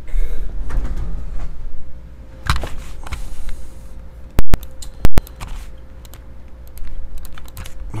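Typing and clicking on a computer keyboard, with scattered key clicks. Two very loud sharp pops a little under a second apart come near the middle.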